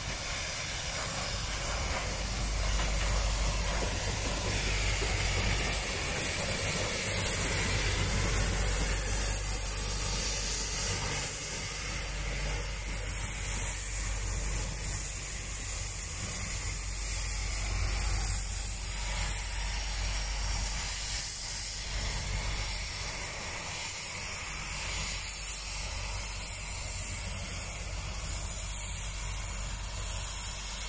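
Two 1949 Japanese-built Pacific steam locomotives hauling a passenger train slowly past the platform: a steady rumble of running gear and steam that grows louder as the engines pass and eases slightly as they move away. A steady high-pitched whine runs throughout.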